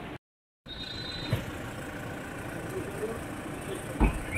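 A brief dropout to silence, then a car engine idling steadily under murmuring voices, with a single knock a little over a second in.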